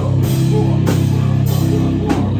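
Live rock band playing loud: electric guitar and bass hold a low sustained chord over drums, with cymbal crashes about once a second.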